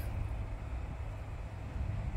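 A steady low background rumble with no distinct events.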